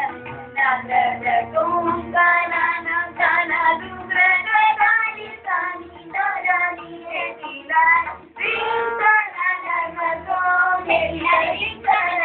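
A child singing a Hindustani classical vocal line with melodic turns and held notes, accompanied by tabla.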